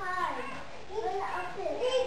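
A young child's high voice vocalizing without clear words, rising and falling in pitch.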